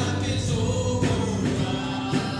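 Choir singing Christian gospel music, with sustained notes.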